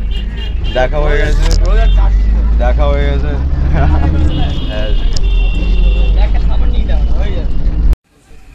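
Loud low rumble of a moving vehicle heard from inside, with people's voices over it and a steady high tone for a couple of seconds midway; the sound cuts off abruptly at the end.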